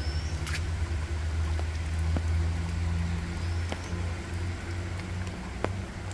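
A low, steady hum of a motor-vehicle engine nearby, swelling a little in the middle and easing off near the end, with a few faint short rising chirps above it.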